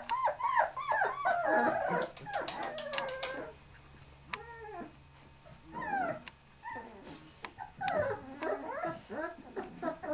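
A litter of puppies whining and yelping in short arched cries, one after another, busiest in the first two seconds and again near the end, with a quieter lull in the middle. A quick run of sharp clicks comes two to three seconds in.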